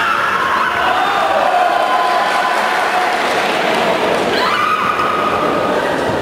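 Drawn-out, high-pitched shouting from people in the hall. One long yell rises and holds, and another starts about four and a half seconds in.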